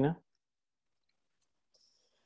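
A man's voice finishing a question in the first instant, then near silence: the pause before an answer.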